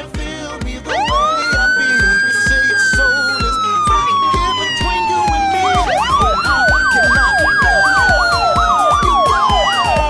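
Police siren wailing: it rises over about a second and falls slowly over about four seconds, twice. A fast up-and-down yelp runs over the second fall. A steady music beat plays underneath.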